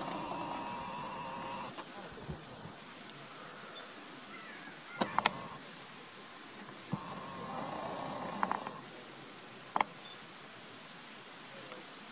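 Camera lens zoom motor whirring twice, each time for about two seconds, starting and stopping abruptly. There are a few sharp, very brief sounds about five seconds in and one near ten seconds, over a faint steady outdoor hiss.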